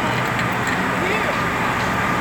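Steady drone of a parked coach bus idling, with faint voices of people around it.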